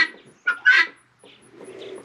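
One short call from a bird in a poultry flock about half a second in, followed by fainter bird sounds from the flock.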